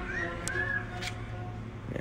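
Quiet background string music fading out over a steady low hum, with two short chirps about a quarter and half a second in.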